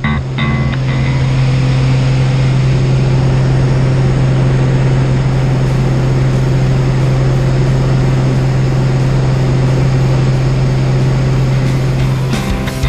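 Small propeller jump plane's engine and propeller in a steady climb, heard from inside the cabin as a loud, even drone with a strong low hum.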